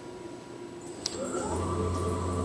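Romi C420 CNC lathe spindle speeding up: a rising whine from the spindle drive that levels off into a steady hum in the second half. A short click comes about a second in.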